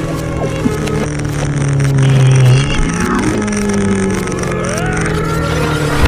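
Motorcycle engine sound effect, revving with rising and falling pitch, over children's background music.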